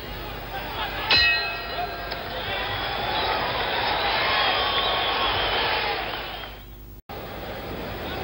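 Boxing ring bell rung about a second in, signalling the end of the round, followed by a swell of arena crowd noise that fades and cuts off near the end.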